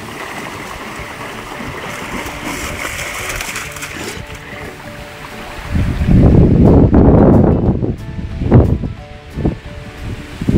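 Water sloshing and splashing as a Neapolitan Mastiff swims with a stick. About six seconds in, loud rumbling bumps of wind and handling on the microphone take over and are the loudest part.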